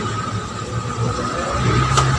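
A low motor rumble that grows louder near the end, over a steady high-pitched hum.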